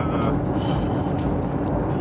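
Steady road and engine noise heard from inside a moving car's cabin, with background music laid over it.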